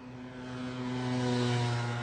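A steady, vehicle-like mechanical drone with a low hum of several even tones. It grows louder to a peak about one and a half seconds in, then eases slightly.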